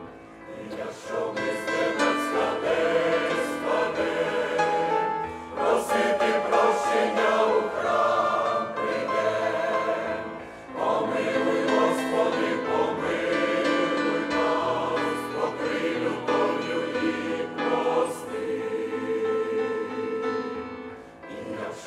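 Large mixed choir of men's and women's voices singing a hymn in Ukrainian, in sustained chords. The singing comes in long phrases, with brief breaks between them about five and ten seconds in.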